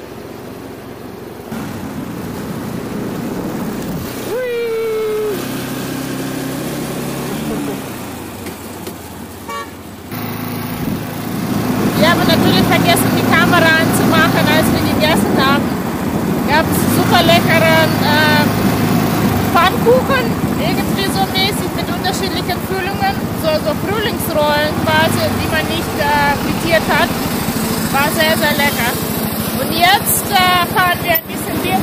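Motorcycle engine running on the move in city traffic, with a vehicle horn. From about ten seconds in, voices shouting and laughing over the engine and road noise.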